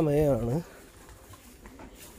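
A man's voice draws out a last wavering syllable, which ends about half a second in, followed by faint, steady open-air market background.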